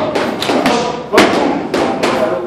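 Kicks and knees landing on leather Thai pads: a quick string of sharp slaps, the loudest a little past the middle.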